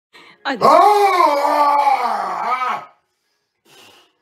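A man's long, strained, howling yell as he heaves a barbell up, sounding like a dog howling: it jumps up sharply in pitch at the start, then wavers for about two and a half seconds before breaking off.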